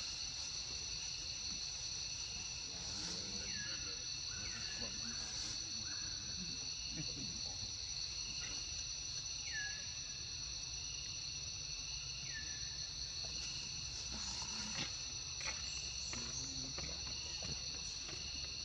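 Steady, high insect chorus of cicadas or crickets drones without a break. A handful of short chirps, each falling in pitch, cut in over it in the first two-thirds.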